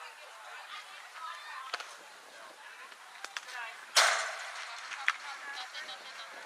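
A pitched softball striking with one sharp, loud smack about four seconds in, amid scattered chatter from players and spectators. A lighter click follows about a second later.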